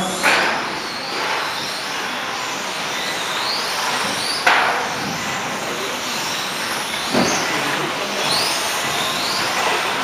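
Electric 1/12-scale RC racing cars lapping: high motor whines that rise and fall as they speed up and slow down, over a steady hiss. Sharp knocks come about four and a half and about seven seconds in.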